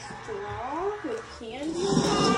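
A young child's wordless vocalising: a few short sounds sweeping up and down in pitch, then a louder, rougher, growly cry near the end.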